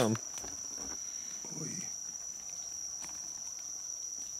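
Steady chorus of night insects, crickets trilling on one constant high note.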